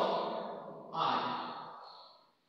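A man's voice drawing out two long vowel sounds, each tailing off. The second begins about a second in.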